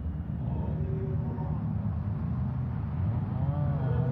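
Rally car engines rumbling steadily, with a brief rev that rises and falls in pitch about three and a half seconds in.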